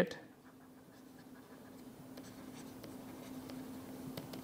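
Stylus writing on a tablet screen: faint scratching with light scattered ticks, over a faint steady hum.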